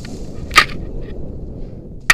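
Low rumbling wind and handling noise on a head-mounted action camera's microphone while hanging on a jump rope, with one sharp click about half a second in.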